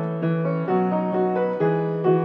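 Grand piano playing sustained chords, moving to a new chord about a second in and again near the end.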